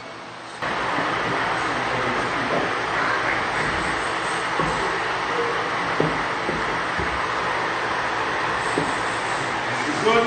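Steady rushing noise of a large wall-mounted gym fan running, with a few faint knocks.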